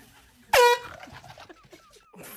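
Handheld canned air horn giving one short, loud blast about half a second in, its pitch dropping quickly to a steady tone as it starts.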